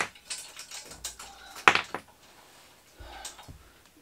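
A few sharp metallic clicks and clinks from handling the bike trailer's metal frame and small wheel-retaining clips, the loudest about a second and a half in, with a couple of faint knocks near the end.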